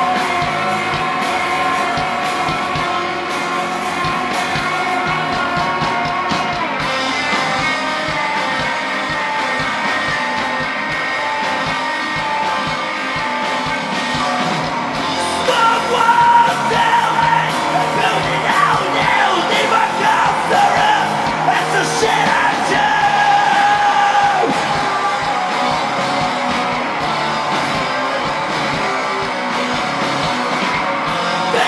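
Live rock band playing: electric guitars, bass guitar and drum kit, with yelled vocals. The music gets louder and busier from about halfway through.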